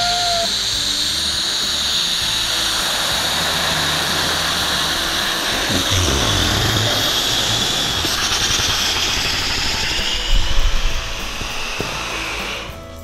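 Air rushing steadily out of a 24-inch latex balloon nested inside a clear bubble balloon as it is squeezed down and deflated; the rush eases off about eleven seconds in.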